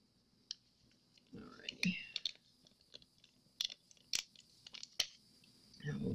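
Quiet handling of small craft supplies: several sharp clicks and taps spread through, with a short murmured voice sound near two seconds in.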